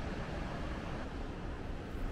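Steady outdoor background noise: an even rush with no distinct events.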